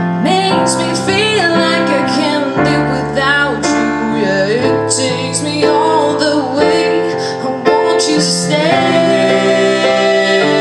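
Live piano accompaniment under a woman's singing voice, with long sliding and wavering runs over held piano chords.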